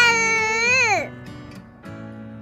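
A child's high voice holding a drawn-out word, which falls away about a second in, over steady background music.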